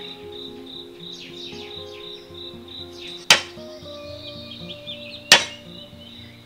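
Two sharp strikes of a cleaver on garlic cloves against a thick wooden chopping block, about two seconds apart. Behind them, a steady high insect drone and soft background music.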